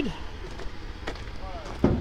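A single sharp knock near the end as a heavy truck starter motor is handled on a steel checker-plate ute tray. A low steady rumble runs underneath, with a faint click about a second in.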